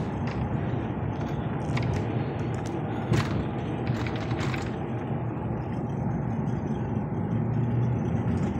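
Steady road and engine noise inside a moving vehicle's cabin, with a few light clicks or rattles around two, three and four and a half seconds in.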